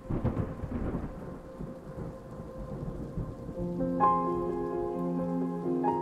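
Rain with a rumble of thunder, loudest at the start and easing off. Music with sustained notes comes in about halfway, over the fading rain.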